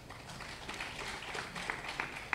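Faint, scattered applause from an audience, a light patter of hand claps.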